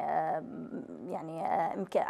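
A woman speaking Arabic in drawn-out, hesitant syllables, with a short pause in the middle.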